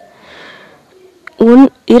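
A speaker's faint in-breath during a pause in speech, followed by a small mouth click and speech resuming near the end.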